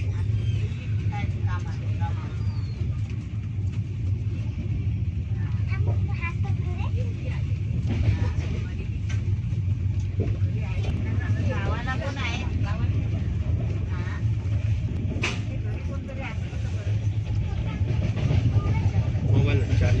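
Mandovi Express passenger coach running at speed, heard from inside: a steady low rumble of the wheels on the rails, with people talking in the carriage.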